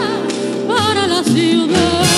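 Vintage Cuban recording: a coloratura soprano voice sings high notes with wide vibrato, with no words, over an orchestral accompaniment. One note slides down early on, then the voice swoops up and down again.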